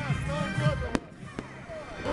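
One sharp bang of a firecracker about halfway through, over music and the voices of a crowd.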